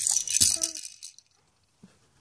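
A baby's toy rattling, with one sharp knock midway through; the rattling stops about a second in.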